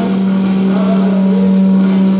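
A loud, steady low drone through the microphone's sound system as a live song ends, with fainter wavering pitched tones above it.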